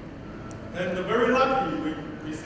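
Only speech: a man talking, starting about two-thirds of a second in after a short pause.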